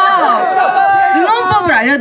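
Only speech: young women talking in Korean into headset microphones over the stage sound system.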